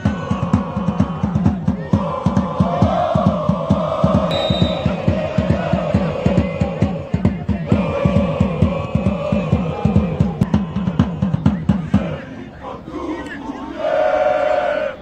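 A football supporters' section chanting in unison over a fast, steady bass-drum beat. The drum stops about twelve seconds in and the massed voices carry on more raggedly.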